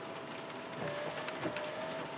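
Light rain pattering, with scattered faint drip ticks and a faint steady whine underneath.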